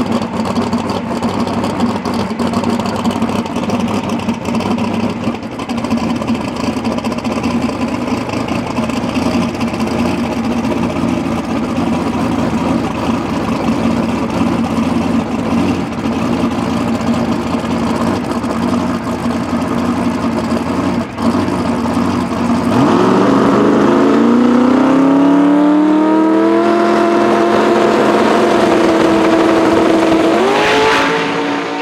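Turbocharged 1972 Chevy Camaro drag car's engine idling steadily on the starting line. About 23 seconds in, the revs climb and hold high and louder as it builds boost for the launch, then rise again at the very end as the car leaves.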